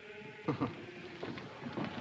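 People laughing in short, broken bursts.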